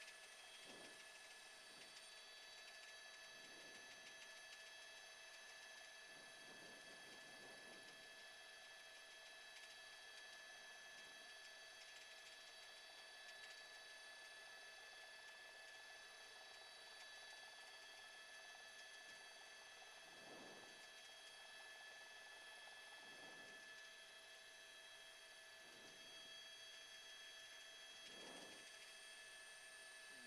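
Near silence, with a faint steady electronic hum.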